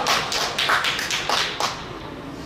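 A handful of people clapping, with quick uneven claps about six a second, dying away shortly before the end.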